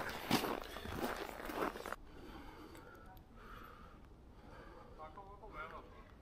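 Footsteps on a snowy street, with wind and handling noise on the microphone, then a sudden drop about two seconds in to quiet outdoor ambience.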